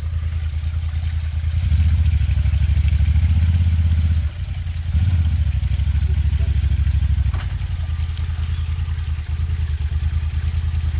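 Side-by-side UTV engine running at low revs as the machine crawls down a rock ledge. It rises a little about two seconds in, dips briefly just after four seconds, picks up again, and eases off near the end.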